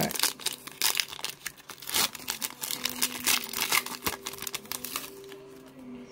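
Plastic foil wrapper of a football trading-card pack being torn open and crumpled by hand: a dense run of sharp crackles and rustles that thins out in the last couple of seconds.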